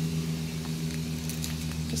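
Steady low machine hum with a few overtones, holding an even pitch, with a few faint light ticks in the second half.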